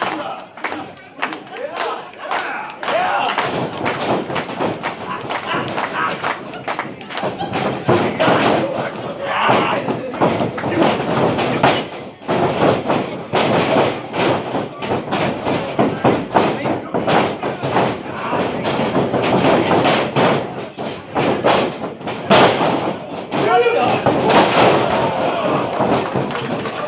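Repeated thuds and slams of wrestlers hitting the ring mat and each other, over crowd shouting and chatter.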